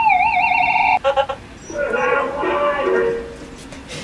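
A siren sound effect with a quick, even up-and-down warble cuts off suddenly about a second in. It is followed by a recorded voice yelling a short ad-lib, both played back from a song's sound-effects tracks.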